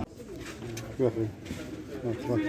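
A pigeon cooing: one short call about a second in, with fainter coos around it.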